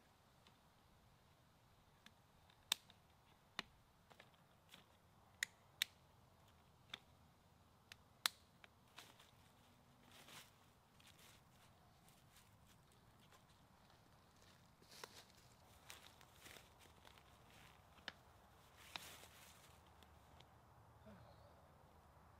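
Snap-on Chair Buddies feet clicking into place on the legs of a Helinox Zero camp chair: a string of sharp, separate clicks through the first half, followed by softer rustling and handling noise.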